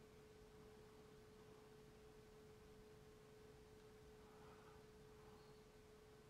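Near silence with a faint, steady tone at one unchanging pitch held throughout.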